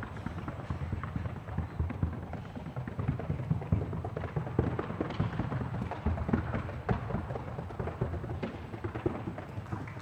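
Rapid, even hoofbeats of a Paso Fino gelding performing the classic fino gait: a fast, unbroken run of short sharp strikes.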